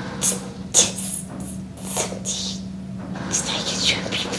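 A man speaking, with a steady low hum underneath.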